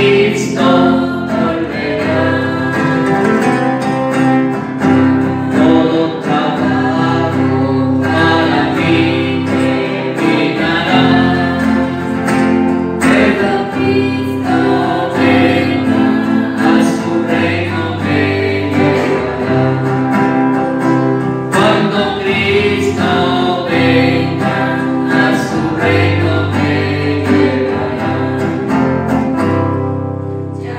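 A hymn sung by voices together, accompanied by two strummed acoustic guitars. The music runs on steadily and dips slightly in volume near the end.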